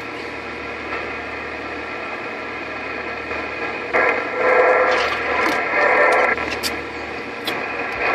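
Receiver static and band noise from a President HR2510 radio's speaker tuned to 27.085 MHz, with a louder, muffled burst of signal from about four to six seconds in.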